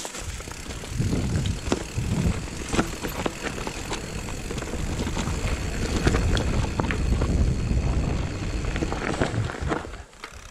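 Mountain bike riding down a dirt trail: tyres rolling over dirt and leaves, with many short rattling clicks from the bike over bumps. Wind buffets the microphone in an uneven low rumble that gets louder from about a second in.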